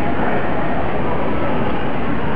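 A loud, steady rushing noise that stays even throughout, with no speech.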